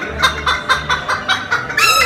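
Rooster clucking in a quick run of short calls, with a louder, longer call near the end.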